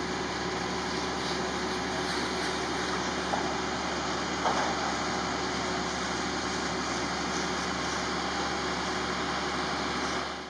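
Fire tender's engine running steadily: a constant low hum under a wide hiss, with a brief knock about four and a half seconds in.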